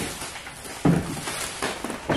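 A large cardboard box holding a boxed wooden TV stand being tipped over: a sudden thump a little under a second in, then irregular knocking and scraping of the cardboard.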